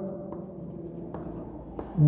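Chalk writing on a blackboard: quiet scraping strokes, with a few short taps as the chalk meets the board.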